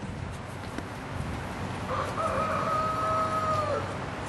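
A rooster crowing once: one long held call about halfway in that drops in pitch at the end.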